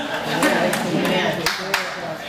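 A man preaching into a microphone, with a few sharp, scattered hand claps from the congregation.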